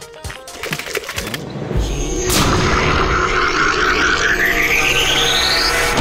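Cartoon crunching from bites of apple and cheese, a quick run of crisp crunches, then a music sting. In the sting, a low rumble sets in about two seconds in and a whistle-like tone climbs steadily in pitch until near the end.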